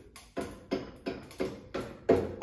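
Rubber mallet giving the end of a motorcycle's front axle about six soft, evenly spaced taps, roughly three a second, to drive the snug axle out through the wheel hub.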